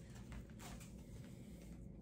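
Faint handling noise of a plastic comic book bag and its tape flap being folded, over a low steady room hum.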